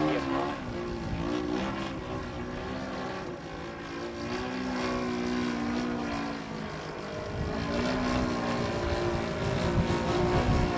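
Engine and propeller of a large radio-controlled aerobatic model plane in flight, its pitch rising and falling as the throttle changes through the manoeuvres.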